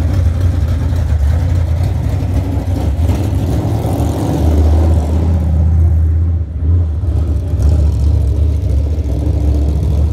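Dirt late model race car's Chevrolet 604 crate V8 running loud as the car drives around on grass. It revs up about four seconds in and dips briefly a little past halfway.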